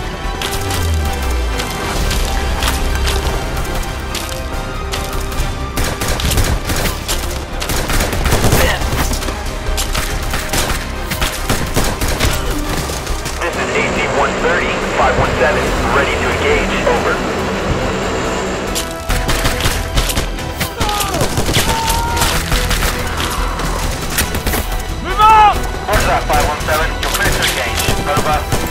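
Film battle soundtrack: repeated bursts of automatic gunfire and booms over a music score.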